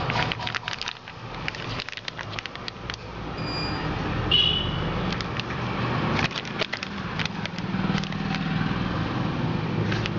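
Clear plastic bag crinkling as it is handled, a dense run of small crackles, over a steady low drone. A couple of brief high tones sound about four seconds in.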